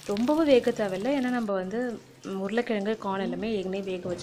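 A woman talking, with a faint sizzle of breadcrumb-coated corn cutlets shallow-frying in oil beneath her voice. Her speech breaks off briefly about halfway through.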